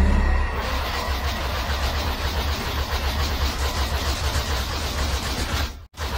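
Anime punch-barrage sound effect: a dense, continuous roar of rapid blows over a deep rumble. It cuts off abruptly just before the end.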